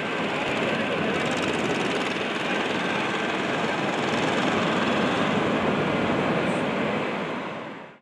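Airport ambience: a steady rush of jet airliner engine noise with a faint high whine, fading in at the start and out just before the end.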